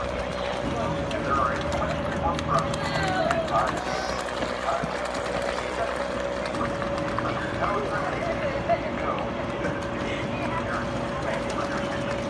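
Voices of children and adults chattering in the background, none of it clear speech, over a steady unbroken hum.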